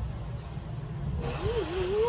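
Steady low rumble of background noise, joined about a second in by a hiss, and near the end by a short wavering hum of a voice.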